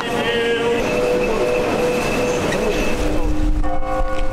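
Orthodox church choir chanting in long held notes that step from pitch to pitch, with a low rumble coming in near the end.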